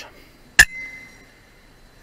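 A single shot from an FX Dreamline .177 PCP air rifle about half a second in: one sharp crack followed by a brief, fading ringing tone.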